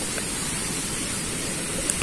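Steady, even rushing noise of flowing water.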